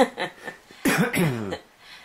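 A woman coughing: a short sharp burst at the start, then about a second in a harsh cough that trails off into a falling voiced sound.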